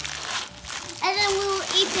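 Foil wrapper crinkling as it is peeled off a giant chocolate egg, followed about a second in by a young child's voice.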